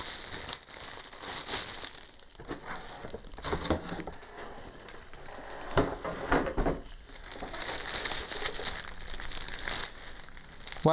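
Packaging crinkling and rustling as a CPU liquid cooler is unpacked by hand, with a couple of soft knocks about six seconds in.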